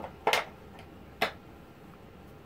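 Two short puffs on a tobacco pipe, lip smacks on the stem about a second apart.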